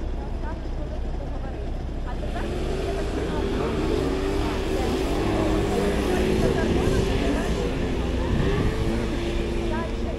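City street traffic: a vehicle engine hums steadily from about two seconds in, growing louder toward the middle, over a constant low traffic rumble, with passers-by talking.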